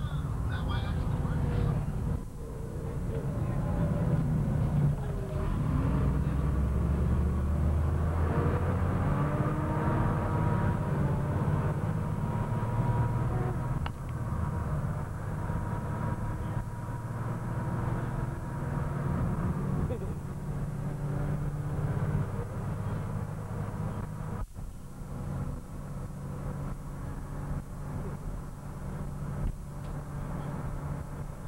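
School bus engine and road noise droning inside the moving bus's cabin, with passengers' voices talking over it.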